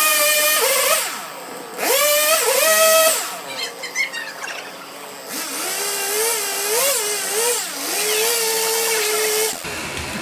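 Gas chainsaw carving a small wooden stump, its engine revving up and easing off again and again as the throttle is worked during the cuts. It runs at lower, wavering revs through the second half.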